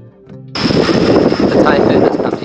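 Soft title music ends and, about half a second in, the sound cuts abruptly to loud typhoon wind buffeting the camera microphone, with a man's voice partly buried in it and a thin steady high whine.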